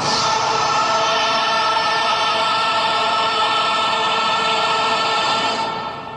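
A group of voices singing one long held chord, fading out near the end.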